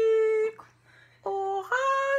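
A voice singing a snatch of a Christmas tune in long held notes, breaking off for under a second midway before singing on.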